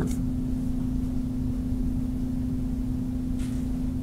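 Room tone: a steady low electrical hum over even background noise, with a soft brief hiss about three and a half seconds in.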